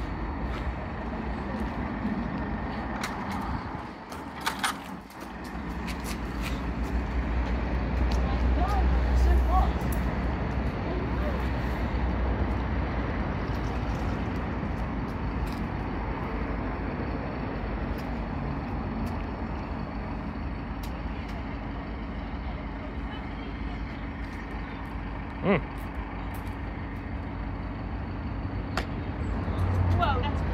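A large vehicle's engine running at idle: a steady low rumble and hum, swelling around eight to ten seconds in, with scattered faint clicks over it.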